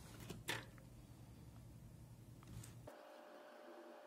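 Near silence: faint room tone with one light click about half a second in. A low hum cuts off a little before the end.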